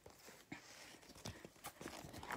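Faint, scattered clicks and taps from a Pokémon card binder being handled, a few light knocks about half a second apart.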